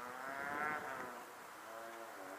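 A vehicle engine revs up and drops back in the first second, then runs on at a steadier, lower pitch.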